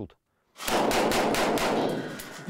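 Rapid automatic rifle fire: a loud, dense run of shots starting about half a second in, after a brief silence, and continuing for well over a second.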